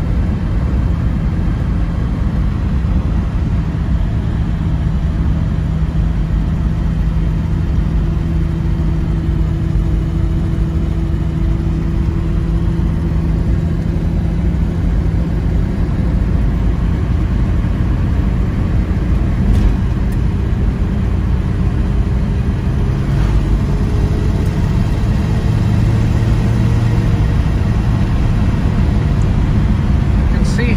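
1964 Plymouth Valiant cruising, heard from inside the cabin: a steady, nice and quiet low hum of engine and tyres. Over the last ten seconds the engine note rises slowly in pitch as the car gathers speed.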